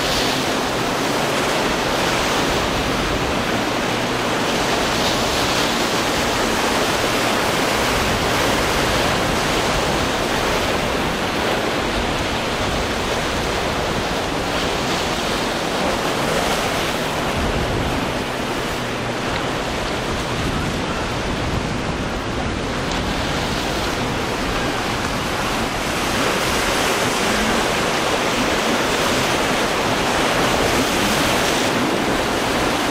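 Steady rush of rough surf and wind over choppy open water.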